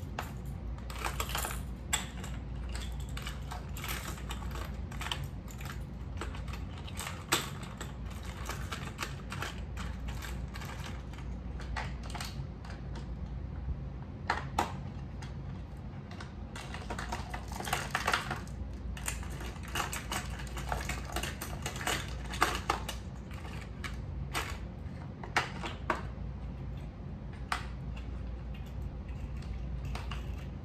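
Fishing lures and hooks clicking and rattling against the plastic compartments of a cantilever tackle box as they are handled and rearranged: a run of irregular light clicks and taps with a few sharper knocks, over a steady low hum.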